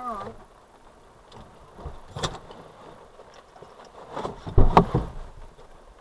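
Car door clicks and knocks as an occupant gets out of the parked car, with a louder thud about four and a half seconds in.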